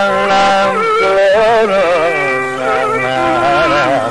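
Carnatic vocal music in raga Chakravakam: a male voice sings long phrases with wavering, gliding ornaments (gamakas) over a steady drone.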